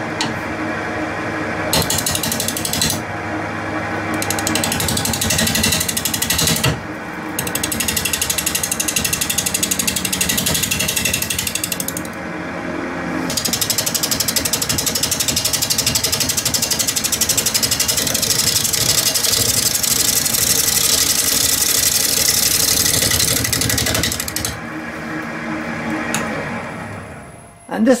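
Wood lathe spinning an out-of-round carrot-wood blank at 720 RPM while a turning tool roughs it down. There are long cutting passes with a rapid rattling as the tool meets the uneven surface, broken by short pauses. The noise dies away near the end as the lathe stops.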